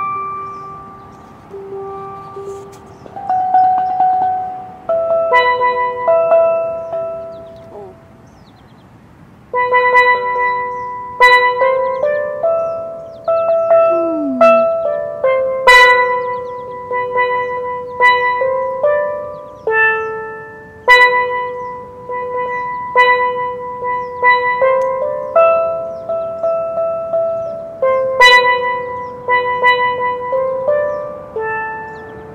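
Steel pan struck with a pair of sticks, playing a melody of ringing notes that each fade away. It starts slow and sparse, stops for about a second and a half near eight seconds in, then picks up into a livelier run of notes.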